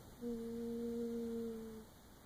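A person humming one steady low note for about a second and a half.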